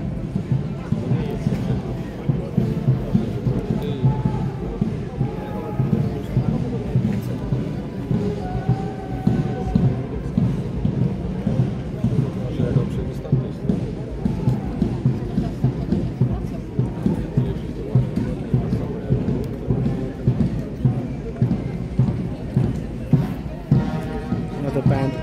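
Military marching band playing a march, with a steady drum beat about twice a second under the brass, and crowd voices around.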